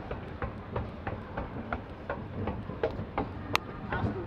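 Quick footsteps knocking on the grooved metal steps of a running escalator, about three a second, over the escalator's steady low rumble, with one sharper click about three and a half seconds in.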